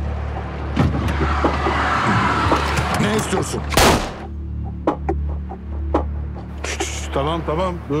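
Low steady drone of a tense dramatic score under scattered sharp clicks and rustles, with a short loud noisy hit about four seconds in. Men's voices come in near the end.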